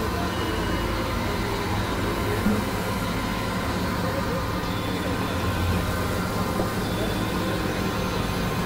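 Experimental synthesizer drone music: a dense, steady mass of layered sustained tones over a noisy haze and low rumble, with a soft low blip now and then.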